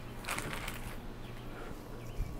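Faint splashing and bubbling of hot water in a stockpot as frozen corn settles in and is pushed under by hand, with a few soft splashes about half a second in, over a low steady hum.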